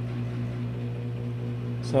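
A steady low hum with a few faint, even tones above it, unchanging throughout: the room's background drone.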